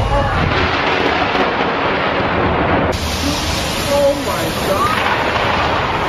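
Thunderstorm: a steady wash of rain with a low thunder rumble, and people's voices calling out now and then.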